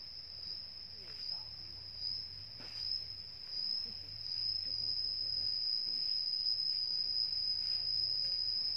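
Insects singing: one steady, high-pitched drone.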